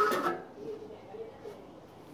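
A man's voice trails off in the first half second, then a quiet room with only faint, indistinct background sound.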